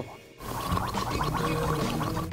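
A person gargling a mouthful of smoothie, a steady gurgle starting about half a second in and running on.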